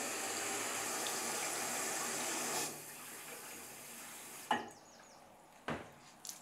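Bathroom basin tap running, with the flow dropping sharply about two and a half seconds in, then hands rubbing soap over the basin. Two sharp knocks come near the end.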